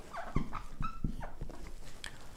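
Marker pen writing on a whiteboard: a few short squeaks of the felt tip and light taps as figures are written.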